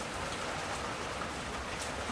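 Rain falling steadily and pretty hard, an even hiss of drops with no break.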